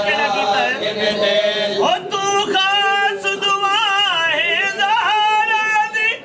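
Men's voices chanting a mournful lament (noha) in the manner of a Shia mourning vigil. Several voices overlap for about the first two seconds, then one man holds long, wavering notes alone.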